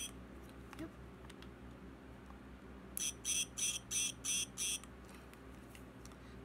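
LED duck keyring toy's sound chip, button pressed: one short, high electronic chirp at the start, then a run of six quick chirps about three seconds in, about three a second.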